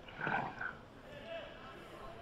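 A brief voice sound just after the start, then faint open-air match ambience with distant voices from the pitch.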